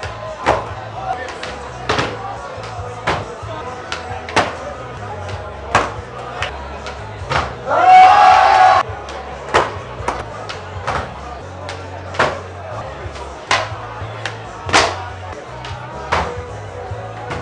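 Music with a steady drum beat and bass line playing through a club sound system. A loud shout from the crowd rises over it about eight seconds in.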